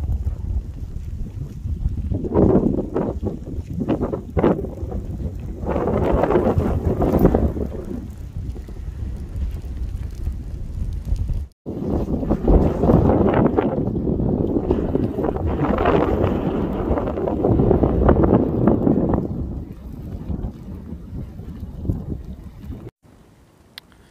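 Wind buffeting the phone's microphone in gusts, a low rumbling noise that swells and fades, with two brief drop-outs where the recording cuts.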